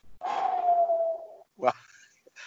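A man's drawn-out, exasperated sigh, voiced and falling slightly in pitch over about a second, acting out his impatience at waiting. It is followed by the spoken word "well".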